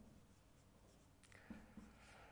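Faint scratching and light taps of a marker writing on a board, in a few short strokes that come mostly in the second half.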